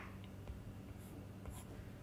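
Faint scratching and tapping of a stylus on a pen tablet while a formula is written and crossed out.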